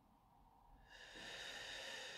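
A slow, deliberate deep breath: a soft airy hiss begins about a second in and is held, part of a counted deep-breathing exercise.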